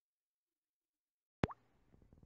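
Dead silence, then about three quarters of the way in a single sharp pop as the sound cuts in, followed by a faint low rumble of a car's cabin while driving.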